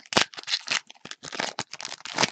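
Foil trading-card pack wrappers crinkling and cards rustling as packs are torn open and handled: a quick, irregular run of crackles, the loudest just after the start.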